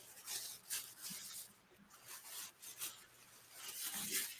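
Faint rustling and rubbing in irregular short bursts, the sound of a person shifting and handling things close to a desk microphone.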